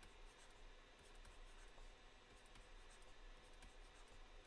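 Near silence with faint stylus strokes on a tablet screen as small squares are drawn.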